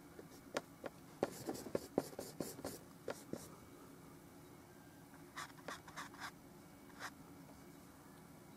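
Bristle brush dabbing and scraping oil paint onto a textured canvas: a quick run of short scratchy strokes in the first few seconds, then another short run about five seconds in and a single stroke near the end.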